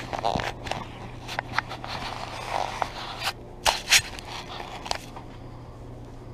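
Gloved hands pulling weeds from a garden bed: leaves and stems rustling, with quick crackles and snaps as plants are torn out. The loudest snaps come about four seconds in, and it quietens in the last second.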